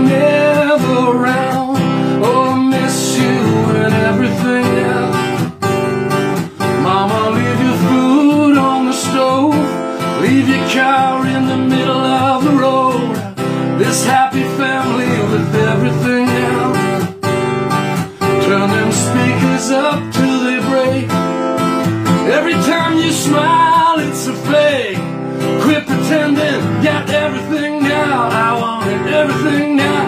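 A man singing while strumming an electro-acoustic guitar.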